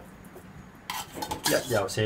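A spoon scraping and clinking against the inside of a metal cat-food can and a ceramic bowl as wet cat food is scooped out, starting about a second in. A voice-like call is heard over the scraping in the last part.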